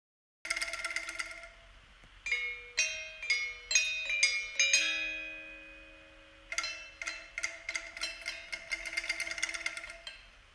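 Balinese gamelan music: bronze metallophones struck in quick irregular clusters, with long ringing tones. It enters about half a second in after silence, and a lower ringing tone is held through the second half.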